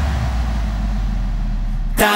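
Transition in an electronic pop track: a held deep bass note under a hissing noise sweep whose highs are filtered away, darkening toward the end. It cuts off suddenly at the end as the next section drops in.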